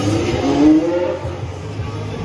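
Formula One car engines running on the circuit during testing, a steady low drone with one engine note rising in pitch about half a second in as a car accelerates.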